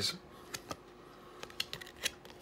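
Trading cards handled by hand, the top card slid off the stack: a few faint, sharp clicks and flicks of card stock, more of them near the end.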